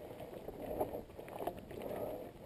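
Mountain bike tyres rolling over a loose gravel track, with the bike rattling and giving sharp knocks over bumps, two of them stronger, about a second and a half apart.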